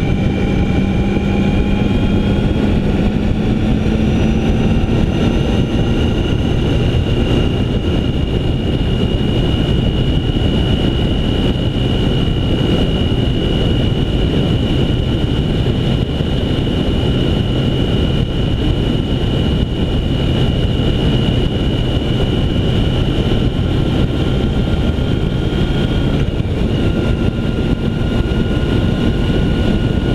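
Motorcycle cruising at steady speed: an even engine drone with a few thin whines that hold nearly steady pitch, under heavy wind rush on the microphone.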